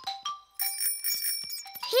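A small bicycle bell ringing: a quick run of strikes whose ring hangs on for over a second before fading.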